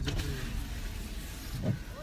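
Steady low rumble of a motor vehicle running, with a short click at the start and faint voices in the background.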